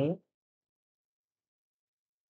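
The end of a man's spoken word, cut off about a quarter second in, followed by dead silence.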